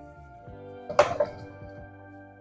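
A wooden spoon stirring noodles in a metal saucepan, with one sudden knock against the pan about a second in. Soft background music with steady held tones plays underneath.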